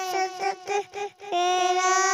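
A toddler girl singing a naat into a handheld microphone, holding long notes. A few short syllables and a brief break for breath come about a second in, before she holds the next note.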